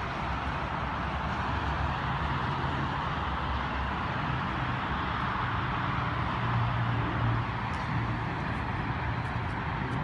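Steady noise inside a Mazda CX-5 cabin with the car running: a low, even hum under a constant rush of air like the climate fan blowing.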